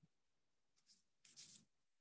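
Near silence: room tone in a pause between sentences, with a couple of faint, short rustling noises about a second in.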